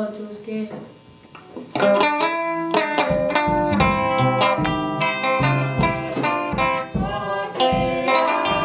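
A chanted or sung voice ends about half a second in. After a short pause, instrumental church music on a plucked-string instrument begins near the two-second mark: a run of sharply struck notes that die away, over a lower bass line.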